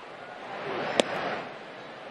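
A pitched baseball, an 86 mph cutter, pops once into the catcher's mitt about a second in, over a swell of stadium crowd noise.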